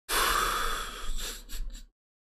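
One long, noisy breath close to the microphone, lasting nearly two seconds and breaking into a few short puffs near the end.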